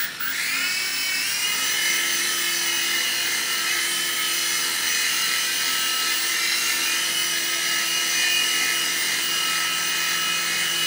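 Small electric coaxial-rotor RC toy helicopter spinning up its motors with a rising whine over the first second or so. It then holds a steady high-pitched motor whine and rotor buzz as it lifts off and flies.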